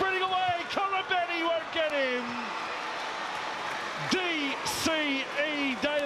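Excited male TV commentary calling a try, over the steady noise of a stadium crowd that comes through alone for about a second and a half midway.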